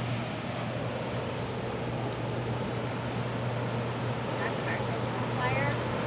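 Storm wind and rain blowing as a steady rush, with a constant low hum underneath. A short squeaky sound comes near the end.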